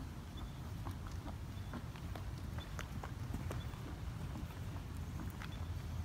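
Hooves of a three-year-old Oldenburg gelding trotting on sand: a run of soft, irregular hoofbeats over a low steady rumble.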